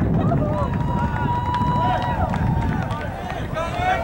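Distant voices shouting across a soccer field, with one call held for over a second. Underneath is a steady low rumble of wind on the microphone.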